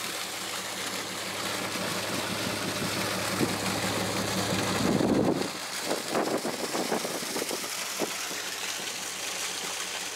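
Water gushing from a pump hose into a galvanized steel stock tank, with an engine running steadily underneath. About halfway through, the engine hum stops, leaving a hiss and a few knocks and clatters.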